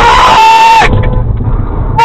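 A person's loud scream, one long cry of about a second that falls slightly in pitch, over the low rumble of the car's engine and road noise.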